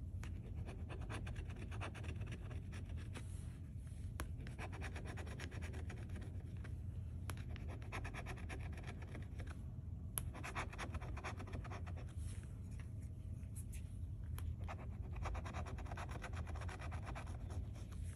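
Metal bottle opener scratching the latex coating off a paper scratch-off lottery ticket, in runs of rapid strokes broken by short pauses.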